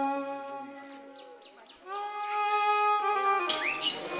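Background score of long, held violin notes that fade away, then a new held note comes in about halfway through. A few short bird chirps sound in the middle and again near the end, where outdoor background sound comes in.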